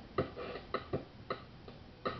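Circuit-bent Yamaha RX-120 drum machine playing a sparse, steady pattern of short, clicky hits with a ringing pitched tone, about two a second. The hits grow weaker near the end.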